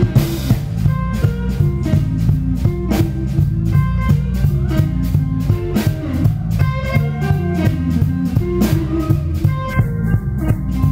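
Live blues band: an electric guitar playing short melodic lines over a steady drum-kit beat.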